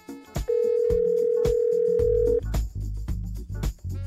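A telephone ringing: one steady electronic ring tone lasting about two seconds, starting half a second in.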